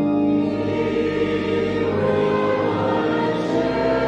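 Church choir and congregation singing a hymn together.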